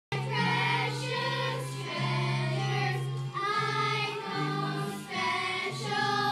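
A group of young girls singing together as a children's choir, holding long notes that change about every second, over a steady low note underneath.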